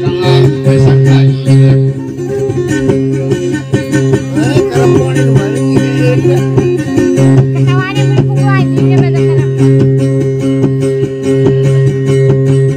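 Acoustic guitar playing dayunday music, a plucked melody over a steady low droning note, with a voice coming in briefly around the middle.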